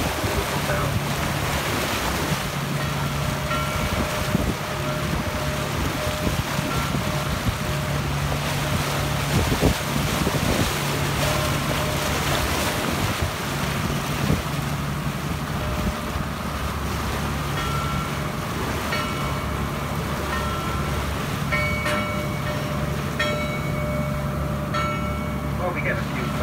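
Bell buoy's bell ringing at irregular intervals, its clappers struck as the buoy rocks in the swell, the strikes more frequent in the second half. Underneath are the steady run of the tour boat's engine, rushing water and wind on the microphone.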